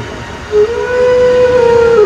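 One long held musical note, starting about half a second in and staying steady in pitch before dipping slightly near the end.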